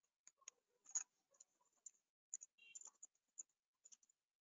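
Near silence broken by faint, scattered clicks of a computer mouse and keyboard, the loudest about a second in.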